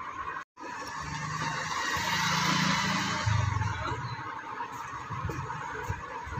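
A motor vehicle passing: after a brief cut-out in the sound, engine and road noise swell up and fade again over about four seconds, the engine note dropping about three seconds in.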